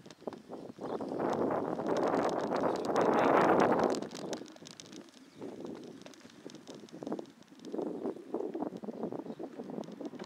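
Wind rushing over the microphone of a camera on a moving bike, loudest for a few seconds near the start and then gusting more weakly, with small rattles and knocks from the ride.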